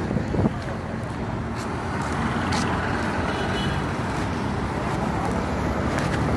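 Street traffic noise: a steady rumble of vehicle engines and tyres on a busy city road, with a few sharp knocks in the first half second.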